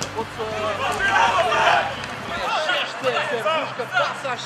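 Several voices of players and spectators shouting and calling out at once on a minifootball pitch, overlapping, with a busier stretch about a second in.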